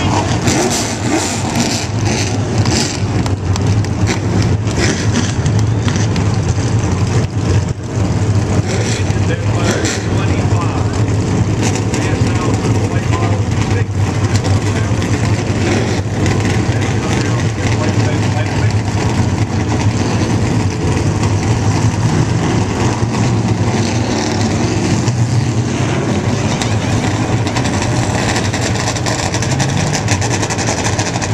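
A field of late model stock cars' V8 engines idling together on the grid before the start, a loud steady low rumble.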